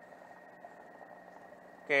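Quiet, steady room tone with a thin, faint high-pitched whine. A man's voice starts again near the end.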